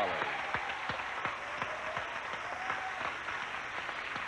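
Studio audience applauding, a steady spread of clapping that holds at an even level throughout.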